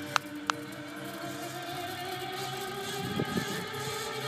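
Music playing from a car's dashboard video screen and stereo, heard inside the car cabin. Two sharp clicks sound in the first half second.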